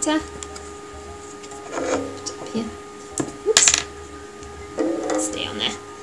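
Brief murmured voice twice, and small handling clicks with a sharper knock about halfway through, as a lolly stick and plasticine are handled on a table. A faint steady hum runs underneath.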